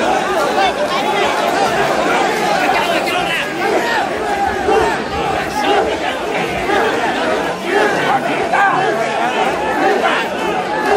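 Dense crowd of mikoshi bearers, many men's voices shouting and calling over one another without a break as they jostle the portable shrine.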